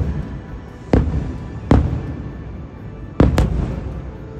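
Aerial firework shells bursting: a loud bang about a second in, another shortly after, and a quick double bang near the end, each dying away over a moment. Music plays underneath.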